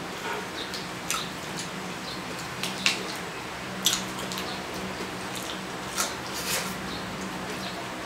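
Chewing and wet mouth smacks from eating braised pig's head meat by hand: a handful of short, scattered clicks over a faint steady hum.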